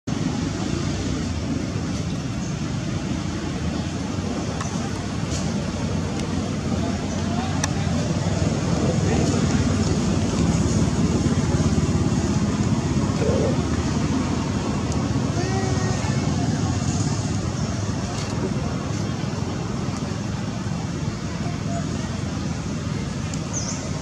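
Steady low rumbling outdoor background noise, a little louder around the middle, with a faint short squeak a little past halfway.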